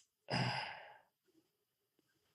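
A man's drawn-out, breathy sigh with a voiced 'uh', breathed into his clasped hands and fading over about three-quarters of a second. He is frustrated at losing his train of thought.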